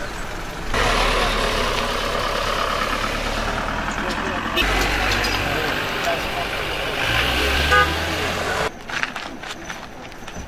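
Several people talking over running vehicle engines, a loud jumbled mix with a low hum underneath. It changes abruptly a few times and drops away sharply near the end.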